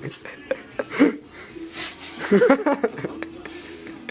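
A match being handled and struck at a gas-log fireplace: a few small clicks of the match and the fireplace's glass doors, then a short scratch a little before the middle, with brief low voices just after it.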